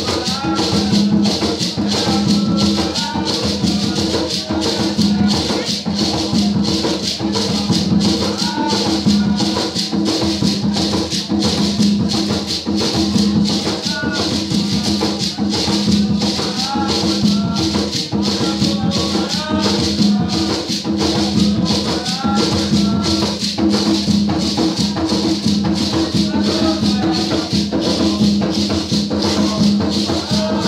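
Live ceremonial percussion music: drums and shaken rattles keep a steady fast beat, with voices singing over it.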